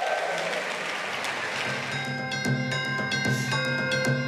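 Audience applause, then about two seconds in, music for a dance performance starts over it with a steady drum beat.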